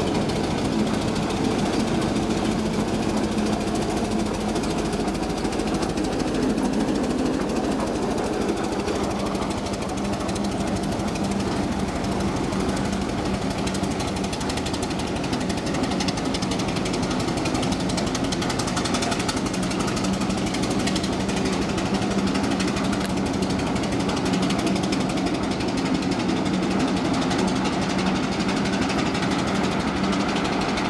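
A vehicle engine running steadily with a rapid, even knocking rattle.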